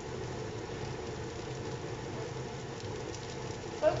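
A steady low mechanical hum with a faint even hiss underneath.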